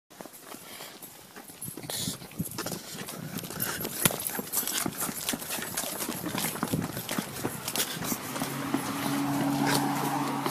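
Footsteps on a concrete sidewalk: irregular sharp clicks and knocks of shoes while walking. A steady low hum joins them near the end.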